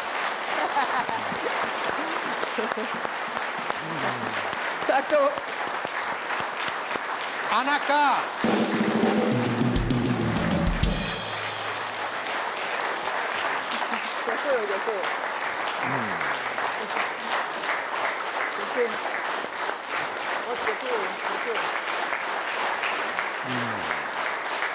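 Studio audience applauding steadily with some cheering, while the house band plays under the applause.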